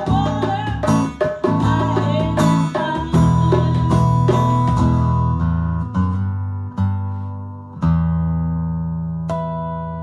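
Acoustic guitar strummed with a djembe played by hand, the closing bars of a song. The playing thins out past the middle, two last accented hits land about a second apart, and the final guitar chord rings on and slowly fades.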